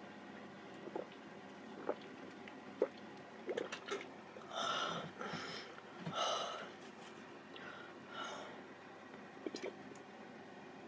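A person gulping soda from a plastic bottle, with small swallowing clicks. Around the middle the bottle comes down and there are a few heavy breaths, and near the end the gulping starts again.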